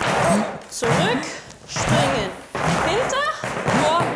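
Irish dance hard shoes striking and scuffing the studio floor as several dancers drill forward-back-and-jump steps: an uneven clatter of loud strikes roughly every half second, with squeaks of soles sliding on the floor.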